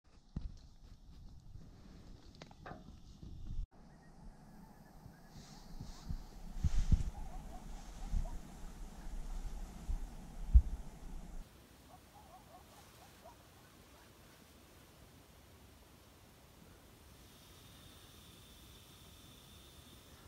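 Coyotes calling in the distance: a faint chorus of wavering high cries, over low thumps and rumble. Most of the calling stops about halfway through, and a few faint cries follow.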